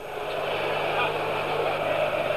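Football stadium crowd noise from a packed terrace, a dense wash of many voices that swells slightly after a shot near the goal, with a steady low hum underneath.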